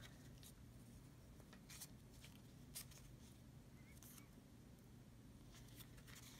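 Near silence, with a few faint, scattered clicks and rustles of a cardboard disc and string being handled as the string is poked through a hole.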